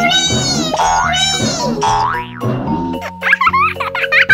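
Cartoon sound effects, springy boings and sliding pitch glides that rise and fall, over light children's background music with mallet-like notes; a wobbling high-pitched effect comes in near the end.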